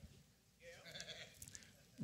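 Near silence in a pause of speech: room tone, with a faint, brief wavering voice about half a second in.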